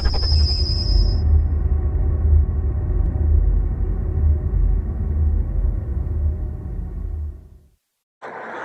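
Intro sound effect: a deep, steady low rumble with a bright high ringing tone over it in the first second. It fades out shortly before the end.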